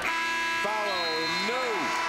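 Arena game-clock horn sounding one steady electronic buzzer tone, signalling the end of the quarter as the clock reaches zero. It stops near the end, with voices shouting over it.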